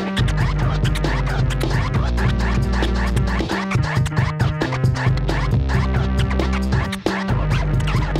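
DJ scratching a vinyl record on a turntable over a beat with heavy bass. The bass drops out for a moment at the start and again about seven seconds in.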